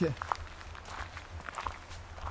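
Footsteps on a dirt forest road, a few uneven steps.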